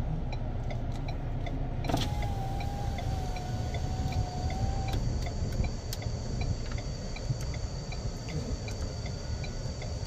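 Ford Ranger Wildtrak's 3.2-litre five-cylinder diesel idling, heard from inside the cab as a steady low rumble. About two seconds in, a click is followed by a small electric motor whining for about three seconds, its pitch falling slightly.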